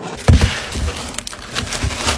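Cardboard shipping box being handled, its flap swung and pressed, with a hard thump about a quarter second in followed by rustling and a few light knocks.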